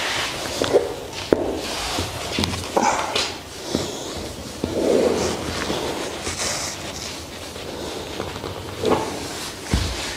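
Irregular rustling with scattered soft knocks and clicks as light-brown leather high-heeled boots are shifted and handled on a hard floor.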